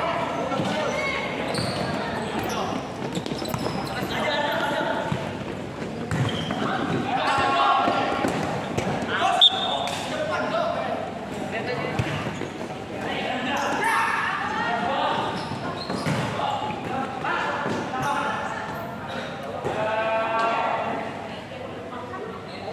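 Futsal match in an echoing indoor hall: players and onlookers shouting over the thuds of the ball being kicked and bouncing on the court, with one sharp, loud impact about nine seconds in.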